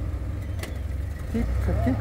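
Willys MB's four-cylinder flathead engine running low and steady as the Jeep crawls slowly over rock.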